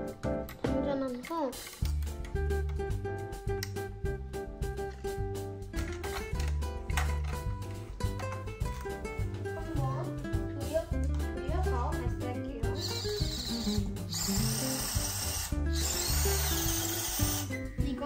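Background music with a steady beat. About two-thirds of the way through, a small electric motor on a LEGO model tank whirs for four or five seconds as the tank's launcher is turned to fire.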